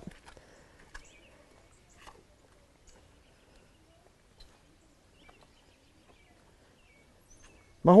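Quiet, with a few faint short bird chirps and soft scattered clicks.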